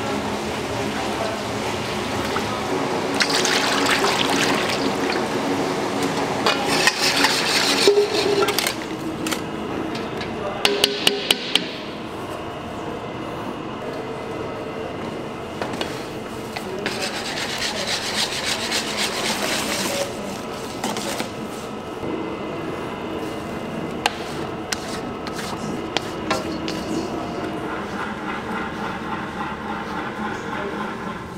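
Kitchen work sounds: liquid cream pouring into a stainless steel bowl, and a wire whisk beating eggs in a steel bowl in several bursts, over steady background talk.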